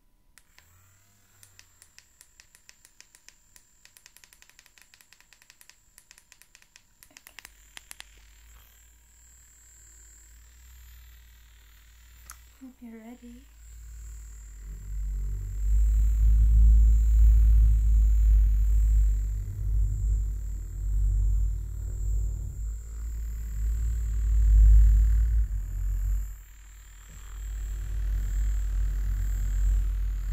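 Electric scalp massager with silicone bristles switched on: a run of light clicks, then a thin steady high motor whine. From about 14 s the vibrating silicone head is pressed and rubbed against a fluffy microphone cover, giving a loud, uneven low rumble.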